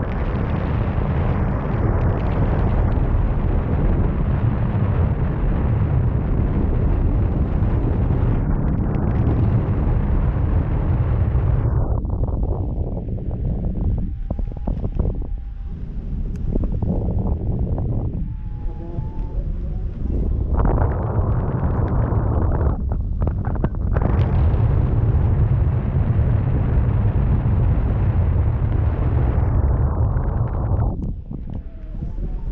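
Heavy wind buffeting the microphone of a camera rigged on a parasail in flight, a dense low rumble that eases for several seconds around the middle and comes back strong.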